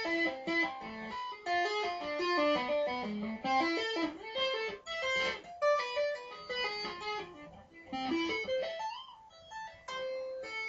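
Electric guitar with little or no distortion, played slowly through a two-hand tapping arpeggio lick. It is a run of single notes from taps, hammer-ons and pull-offs that climb and fall through A minor and diminished-seventh arpeggios, with one note sliding upward near the end.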